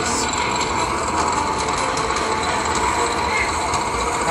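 Walking Dead slot machine's bonus wheel spinning, its spin sound effect a steady noise with a few faint clicks.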